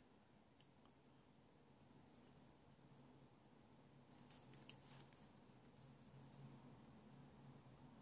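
Near silence, with faint small clicks and rustles about halfway through as fingers work a paper cigar band off the cigar.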